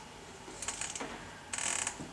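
A few light clicks, then a short rattling, ratchet-like burst near the end, from some small mechanism in the room.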